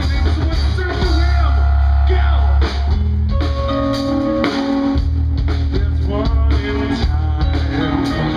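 Live rock band playing electric guitar, keyboard and drums over a heavy low end, with a singer's voice coming in and out.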